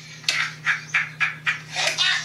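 A man's breathy laughter in short pulses, about four a second.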